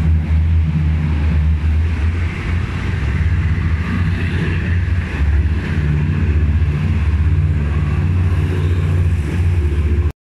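Diesel locomotive hauling a passenger train past, its engine a steady deep drone, with the noise of the coaches running along the track.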